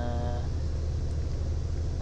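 Steady low rumble of a bus cruising on an expressway, heard from inside the cabin.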